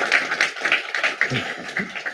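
Audience applauding, many hands clapping together, thinning out near the end.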